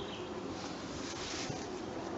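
Faint, steady drone of an aircraft passing overhead.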